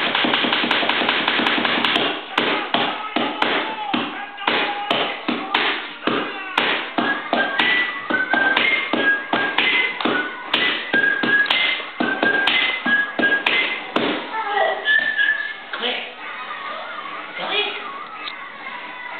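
Rhythmic tapping on a hardwood floor, two or three taps a second, with short high-pitched notes among them; the tapping stops about fourteen seconds in.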